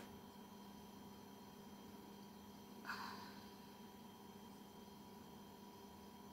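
Near silence: faint room tone with a steady low hum, and one brief soft noise about three seconds in.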